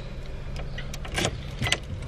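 Car key being put into the ignition lock and turned, giving a few sharp metallic clicks about a second in and near the end, over a low steady hum.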